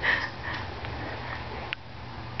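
A baby making breathy noises: two short unvoiced huffs about half a second apart, the first the loudest, followed by a short click near the end.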